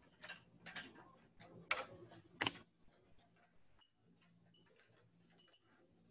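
Footsteps of hard-soled shoes on a hard floor: four distinct steps in the first two and a half seconds, then only a few faint small clicks.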